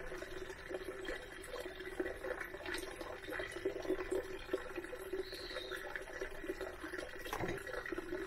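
Wet squelching and crackling of fermented plant mass being squeezed by gloved hands in a plastic colander, with the juice trickling through into the bowl below. A faint steady hum runs underneath.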